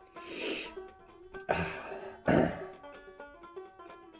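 Banjo music playing steadily, with three short breathy sounds from a man's mouth and throat, the loudest a bit past halfway, while he eats sardines in hot sauce.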